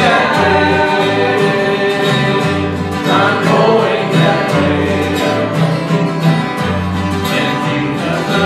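Acoustic guitar strummed in a steady rhythm with alternating bass notes, and a man singing a gospel song over it.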